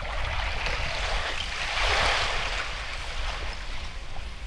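Small wind-driven waves lapping and splashing against shore ice and rocks at a lake's edge, swelling briefly about two seconds in.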